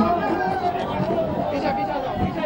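A crowd of protesters shouting and talking at once, many voices overlapping in a clamour.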